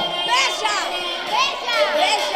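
A group of children shouting and cheering in high voices, several overlapping shrieks, over dance music playing in a hall.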